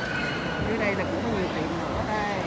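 Indoor shopping-mall ambience: echoing crowd chatter, with a high voice wavering up and down in pitch from about half a second in.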